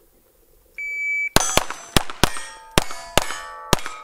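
A shot timer beeps about a second in, then a KelTec CP33 .22 LR pistol fires a rapid string of about seven shots over two and a half seconds, steel targets ringing with the hits. The ringing of the plates hangs on after the last shot.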